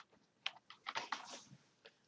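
A few faint computer-keyboard keystroke clicks: one sharp click about half a second in, then a short cluster of softer taps around a second in.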